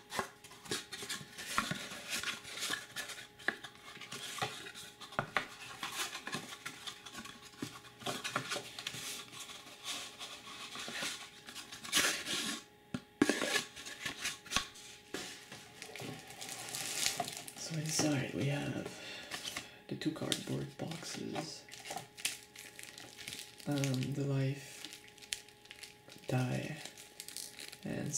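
Close-up hand handling of thin cardboard deck boxes and shrink-wrapped packs: a steady run of soft scrapes, taps and crinkles, with two sharper knocks around the middle.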